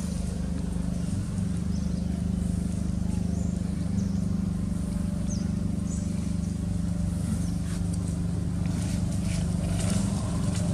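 An engine running steadily, a low even hum, with a few faint short high chirps over it.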